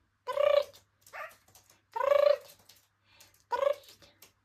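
Pet cat meowing repeatedly: four drawn-out meows about a second apart, the second one shorter and quieter.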